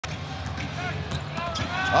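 Basketball game sound in an arena: a ball bouncing on the hardwood court and sneakers squeaking over a steady crowd murmur, with a commentator's voice coming in at the very end.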